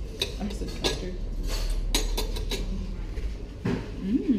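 Metal fork clinking and scraping against a ceramic plate while eating: a series of short, light clinks spread through the few seconds, over a low steady hum.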